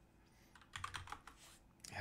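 Computer keyboard typing: a quick run of quiet keystrokes about a second in, as a ticker symbol is typed to change the chart.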